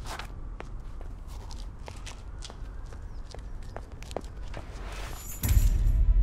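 Footsteps on a concrete floor, sharp steps about twice a second. Near the end there is a loud, deep thump with a rush of noise.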